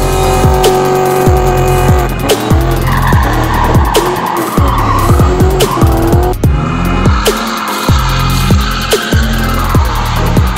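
Electronic music with a heavy bass beat, mixed with a car drifting: its tyres squeal in two long stretches, the second starting about seven seconds in.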